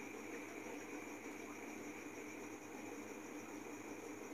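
Faint, steady background hiss with a low hum: the room tone of the narrator's microphone, unchanging throughout.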